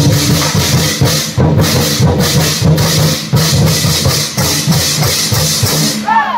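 Vietnamese lion-dance drum ensemble, several large lion drums beaten in fast, dense strokes with hand cymbals crashing along. The playing stops abruptly right at the end.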